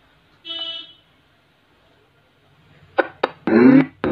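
TG113 Bluetooth speaker giving a short steady power-on beep about half a second in, then playing its audio in broken snatches that start and cut off abruptly near the end. The audio stutters with both drivers connected, which the repairer suspects is the amplifier IC unable to drive the load of both speakers.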